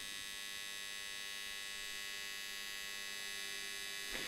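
Steady electrical hum of an AC TIG welding arc on aluminum, heard faintly and evenly with no change.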